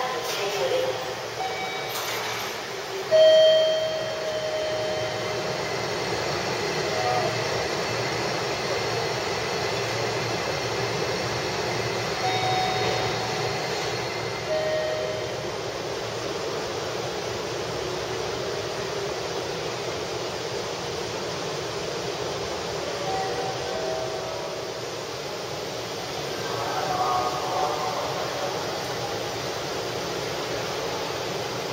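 Railway station ambience: a steady background rumble with short high tones scattered through it. The loudest is a brief tone about three seconds in, and faint voices come near the end.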